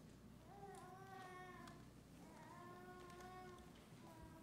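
Near silence, with two faint, drawn-out voice-like sounds about a second long each, one early and one in the second half.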